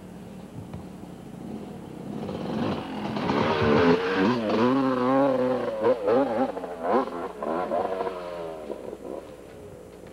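Yamaha YZ250 two-stroke dirt bike engine revving, growing louder from about two seconds in, its pitch rising and falling with the throttle, then fading away near the end.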